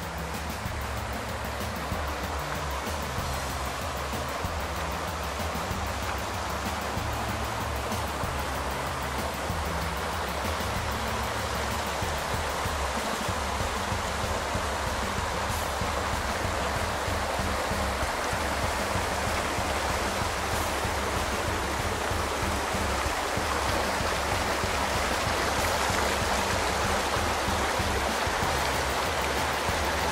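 A mountain creek rushing over rocks in small cascades, slowly growing louder, with background music of low held notes underneath.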